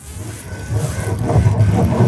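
Electroacoustic music: a low, rumbling recorded texture swells up in loudness out of a held drone chord, and a busier fluttering layer enters about halfway through.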